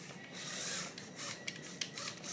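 Rubbing and scraping against the recording device, with a few light clicks in the second half: handling noise as the camera is moved and set steady.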